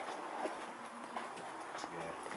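A few faint footsteps on a rubble-strewn floor, spread out as short knocks.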